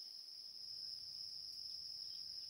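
Crickets trilling faintly in one steady, unbroken high-pitched tone.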